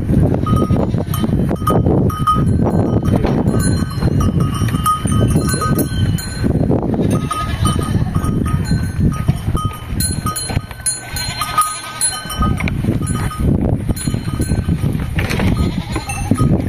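Cattle moving about a dirt corral, with a bell-like metallic clinking that rings out again and again over a steady low rumble.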